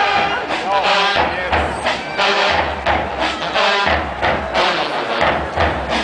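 Marching band music with drums and horns, under loud crowd chatter and shouting close by.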